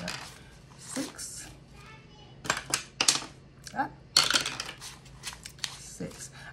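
A die clattering down through a small dice tower: clusters of sharp clicks about two and a half and four seconds in, mixed with the light handling of paper dollar bills.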